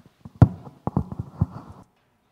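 Microphone handling noise as the microphone is twisted and repositioned in its clip on a boom stand. There is a sharp knock about half a second in, then a quick run of knocks and rubbing that stops shortly before the end.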